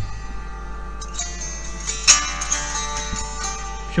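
A song playing through the PiPo W6 tablet's small built-in speakers, held close to the microphone, with a sharp loud note about two seconds in. To the reviewer the speakers' volume is unsatisfying.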